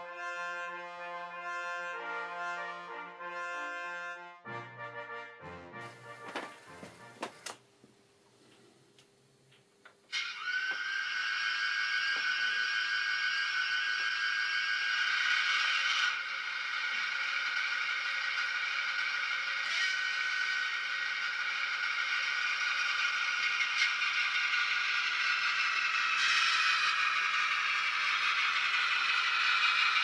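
Brass intro music for the first few seconds, then a short near-silent gap. About ten seconds in, a model DR V 100 diesel locomotive starts running on the layout with a steady whine made of several high tones, which shift in pitch about 26 seconds in.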